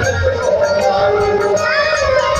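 A voice singing through a loudspeaker system, with musical accompaniment.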